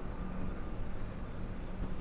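Steady low hum of an idling tour bus, heard inside its passenger cabin.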